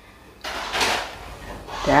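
A rubbing, scraping noise lasting a little over a second, starting about half a second in, followed by a short spoken "ya" near the end.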